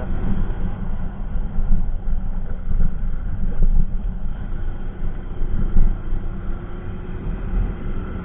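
Hero Honda Passion Plus 100 cc single-cylinder motorcycle riding along a road, its engine running under a steady rumble of wind on the microphone. The engine note rises slightly near the end.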